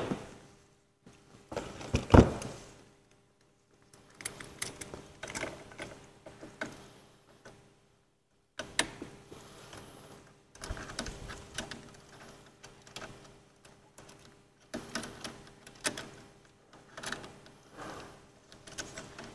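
Stainless-steel sanitary tri-clamp fittings clinking and knocking as a reinforced hose end is fitted onto a pipe joint and the clamp is closed and tightened. The irregular clicks and rattles come in bursts with short pauses, and the loudest knock is about two seconds in.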